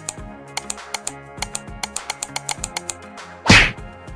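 Subscribe-button animation sound effects over background music: a rapid run of about fifteen sharp clicks, like typing or button clicks, over two and a half seconds, then one loud, short burst of noise about three and a half seconds in.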